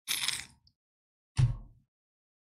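A person sipping a drink close to the microphone, a short hissy slurp, then a brief low thump about a second and a half in.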